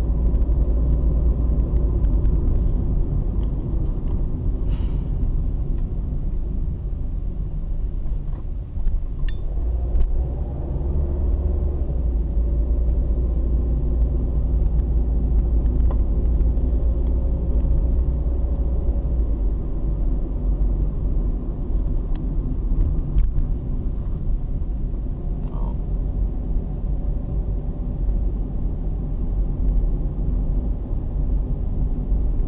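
A car driving on a paved road, heard from inside the cabin: a steady low rumble of engine and tyre noise, with faint shifting engine tones and a few brief faint clicks.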